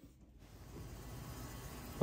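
A lapidary trim saw with water cooling, running with its faint, steady hiss. The hiss fades in about half a second in, after near silence.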